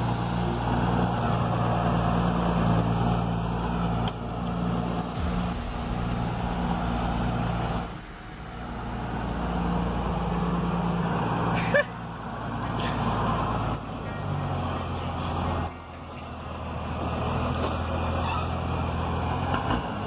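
Mercedes-Benz 1113 truck's six-cylinder diesel engine running at low speed, its note shifting up and down several times as the truck moves along. A single sharp burst stands out about twelve seconds in.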